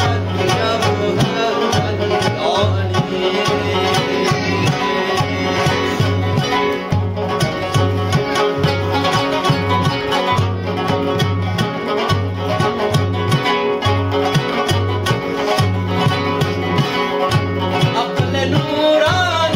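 Afghan rubab played in a fast run of plucked notes over a steady rhythm on a daf frame drum: an instrumental passage of a devotional ginan.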